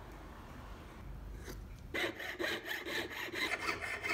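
Jeweler's saw cutting a strip from thin 0.8 mm silver sheet, starting about halfway in with quick, even back-and-forth strokes.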